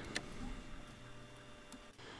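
Faint clicks of the plastic ink damper being unclipped and lifted off an Epson ET-2720 EcoTank's printhead carriage, one just after the start and one near the end, over a low steady hum.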